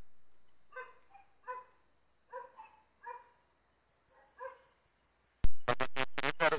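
Faint, brief pitched animal calls, about seven short yelps spread over a few seconds. Near the end a sharp click as a radio transmission opens.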